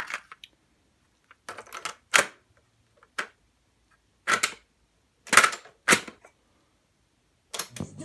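Sharp plastic clicks and clacks of a cassette being handled and loaded into a Sears boombox's cassette deck, with the deck door and piano-key controls snapping, in several short clusters.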